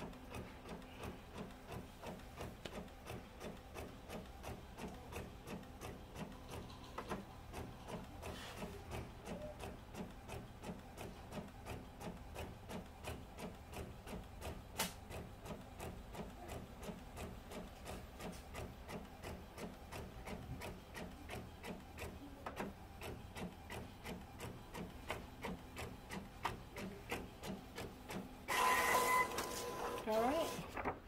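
Epson WorkForce WF-7720 inkjet printer printing a sheet: the print head shuttles back and forth in a steady rhythm of about two passes a second. Near the end comes a louder whirring with a steady whine.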